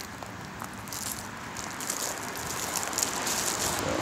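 Crackling, rustling footsteps through dry fallen leaves, growing slightly louder.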